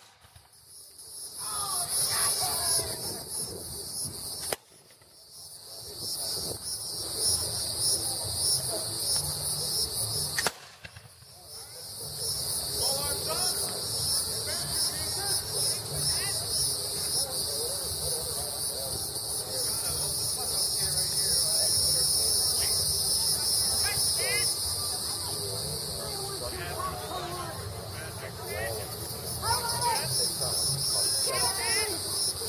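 Three black-powder gunshots, the second about four and a half seconds after the first and the third about six seconds later, each recorded much quieter than it really was, with the sound dropping away for a second or so after it. A steady high chirring of insects runs underneath, with faint voices.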